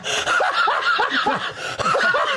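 Two men laughing hard together: a run of short, quick bursts of laughter.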